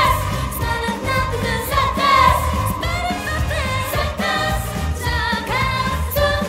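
K-pop dance song played loud through a PA, with a steady bass beat and a female group singing into handheld microphones.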